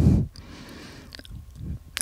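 Soft handling sounds of a raw rolled paratha being pressed flat by hand onto a hot tawa, loudest briefly at the start and then faint, with a couple of small ticks.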